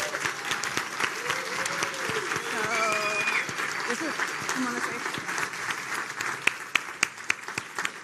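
Audience applauding, with a few voices calling out over the clapping in the first half; toward the end the applause thins to more separate, distinct claps.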